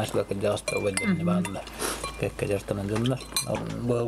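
Spoons and cutlery clinking lightly against dishes several times at a meal table, under a man talking.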